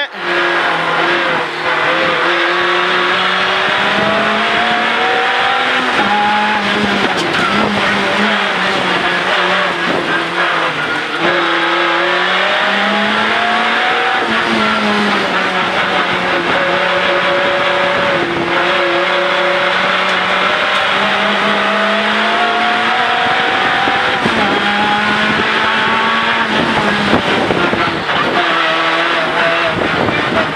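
Renault Clio N3 rally car's 2.0-litre four-cylinder engine heard from inside the cabin at racing speed on a circuit lap. The engine note climbs and drops between corners, with a few brief breaks at the gear changes.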